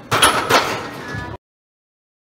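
Loaded barbell and its iron plates clanking twice against a steel power rack, two loud metallic bangs with a ringing tail. The sound then cuts off abruptly about a second and a half in.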